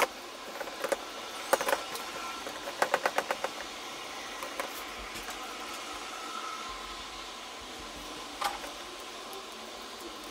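Light clicks and taps of small wooden and plastic robot-kit parts being handled, including a quick run of about six clicks about three seconds in, over a steady background hiss.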